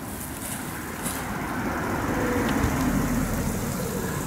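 Traffic noise from a car passing on a nearby road: a steady rush that grows louder over the first three seconds or so.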